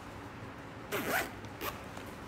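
A zipper pulled open in one quick zip about a second in, followed by a second, shorter zip just after.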